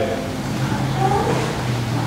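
Steady background noise with a low, even hum: room tone in the gap between spoken phrases.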